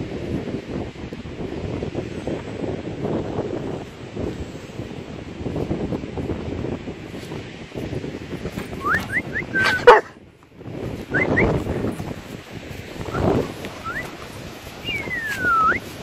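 Doberman whining in short, high, rising whimpers through the second half, with one sharp bark just before ten seconds in: an excited dog impatient to play.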